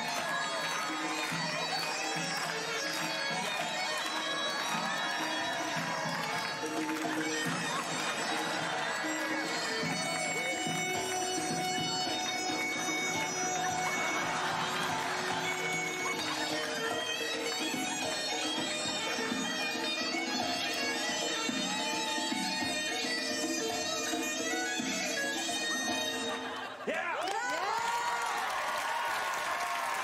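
Armenian folk dance music led by a reedy wind instrument over a steady drone. The music dips briefly near the end, then carries on.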